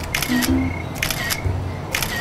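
Smartphone camera shutter sound going off three times, about a second apart, as selfies are taken, over background music.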